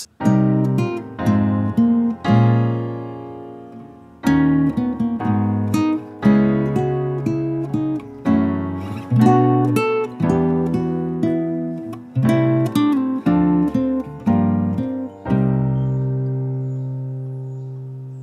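Acoustic guitar and piano playing a progression of minor seventh chords that moves counterclockwise around the circle of fifths (Cm7, Fm7, B♭m7, E♭m7 and on round back to Cm7), with a short melody line over the chords. Each chord is struck and left to ring, and the last chord rings out for the final few seconds. It is a progression that feels darker from chord to chord.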